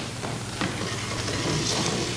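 Steady hiss and a low mains hum from an old videotape recording, with a sharp click at the start and a few faint scuffs and knocks of performers moving on a stage floor.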